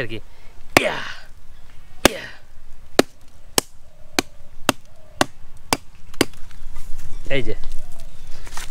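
A blade chopping repeatedly into a sprouted palmyra palm seed to cut it open: about nine sharp chops, spaced out at first, then quickening to about two a second.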